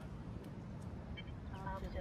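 Quiet outdoor background with a steady low rumble of wind on the microphone. A brief, faint high double tone comes a little past halfway, and a faint pitched, voice-like sound comes near the end.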